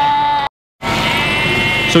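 Sheep bleating: a long bleat breaks off abruptly about half a second in, and after a brief silence another long bleat follows.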